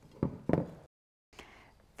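A few light clicks and taps of small screws and a screwdriver against a Marvel-Schebler carburetor as the screws are started by hand, then the sound drops out to dead silence about a second in.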